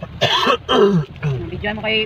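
A person coughing and clearing their throat, two or three rough coughs in quick succession in the first second, inside a moving car over the car's steady low rumble.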